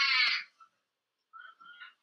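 A child's high-pitched voice, one sustained wavering note that cuts off about half a second in, followed by fainter short vocal sounds near the end.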